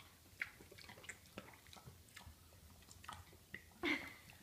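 A minipig chewing pineapple chunks, quietly, with faint irregular clicks of its mouth. A brief louder sound comes near the end.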